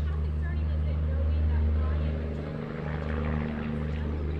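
A steady low engine drone, loudest in the middle and easing off a little past halfway, with a faint voice over it.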